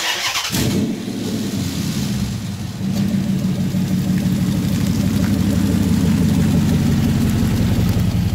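Chrysler 300 engine starting within the first second, then running at a steady idle, recorded close to the exhaust tailpipe.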